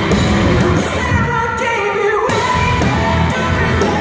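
Live metalcore band playing loud, with distorted electric guitars, bass and drums under a male singer. A little over a second in, the drums and bass drop out and leave the voice over the guitars, then the full band crashes back in about halfway through.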